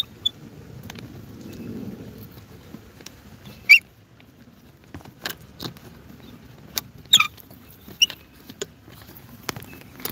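Handling noise from a handheld phone while climbing over a fallen log: a low rubbing rumble with scattered knocks, taps and short squeaks, the loudest just before halfway and about seven seconds in.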